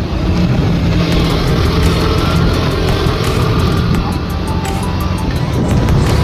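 KTM 250 motorcycle running steadily while being ridden, its engine mixed with wind and road noise, with background music playing over it.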